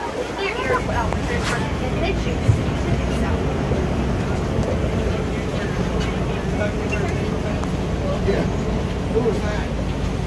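Safari truck driving over a rough dirt track: a steady low engine and road rumble that builds just after the start, with a single jolt about two and a half seconds in.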